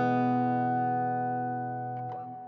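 A held acoustic guitar chord ringing and slowly fading away.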